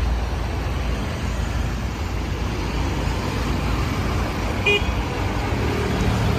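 Steady low rumble of nearby road traffic, with a short horn-like toot about five seconds in.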